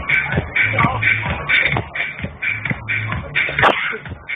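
Techno DJ set played loud over a festival sound system: a steady four-on-the-floor kick drum about twice a second, with crisp beats between the kicks. The sound is muffled, with no treble.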